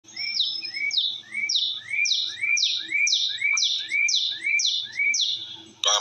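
A songbird singing the same quick two-note phrase over and over, about twice a second: a short rising note, then a higher note sliding down. The song stops just before the end.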